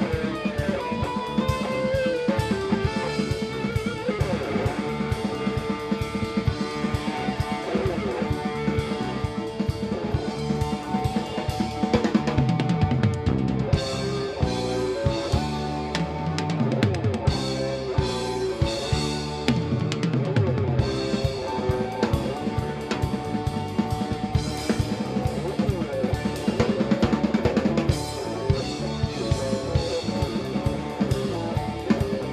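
A live rock band playing, with the drum kit to the fore keeping a steady beat under guitars.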